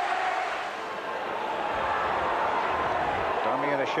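Football stadium crowd noise, a steady din of many voices, with a man's match commentary starting near the end.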